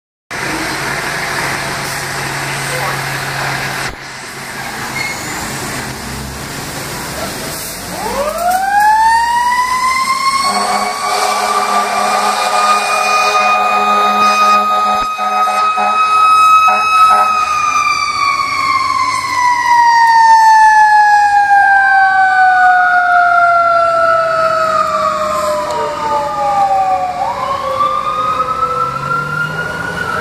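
A fire engine's mechanical siren winds up about eight seconds in and holds a high wail, then coasts slowly down and winds up twice more. A steady horn sounds for several seconds during the first wail. Before the siren starts, the trucks' engines are running.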